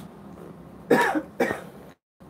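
A man coughing twice in quick succession, short throat-clearing bursts about a second in.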